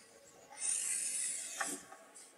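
Marker tip scratching across a large sheet of paper in one long drawing stroke, a hissing scrape that starts about half a second in and lasts about a second, with a short tick near the end.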